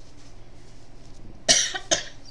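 A person coughing twice in quick succession near the end, the first cough the louder.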